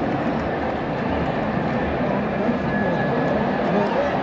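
Stadium crowd noise at a live football match: a loud, steady din of many voices from the stands.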